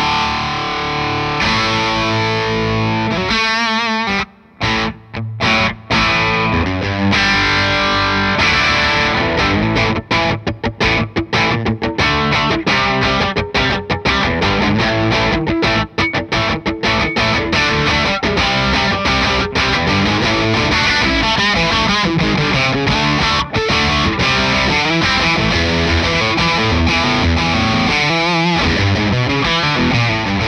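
Electric guitar played through the Laney Ironheart Foundry Loudpedal amp pedal on its channel two, with a distorted tone. It opens with chords broken by a few abrupt stops, moves into choppy riffing with quick breaks, then settles into continuous playing.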